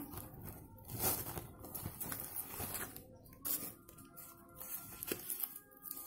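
Faint rustling and crinkling as a sheer organza drawstring pouch is handled and a tarot deck is taken out of it, with short scattered scraping and handling noises.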